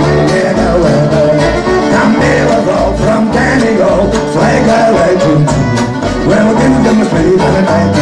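Acoustic folk band playing a lively tune: acoustic guitar strumming, fiddle, and upright double bass plucking a steady bass line.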